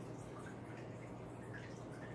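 Quiet, steady trickle of aquarium water circulation, with a low steady hum underneath and a few faint drips.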